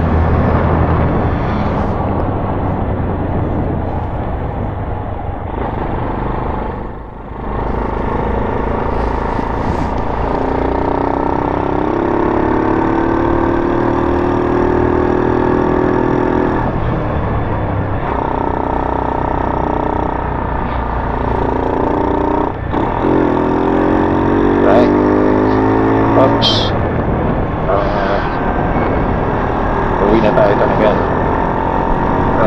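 Rusi Mojo 110 motorcycle's small 110 cc engine running on the road amid steady rushing noise. Its pitch climbs slowly through two long pulls, about ten seconds in and again about twenty-three seconds in, with a brief drop between them.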